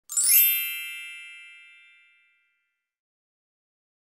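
Channel logo sting: a bright chime that sweeps quickly upward and rings out with several clear tones, fading away over about two seconds.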